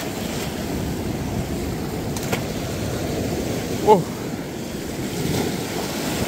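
Steady rush of ocean waves washing in on the rocks of a cove, with wind noise on the microphone.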